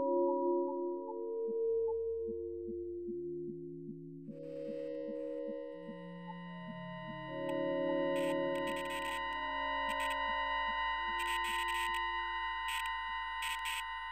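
Experimental electronic music made in SuperCollider: overlapping sustained pure tones at shifting pitches over a steady ticking pulse. About four seconds in, a layer of high steady tones enters, joined later by repeated short hissing bursts.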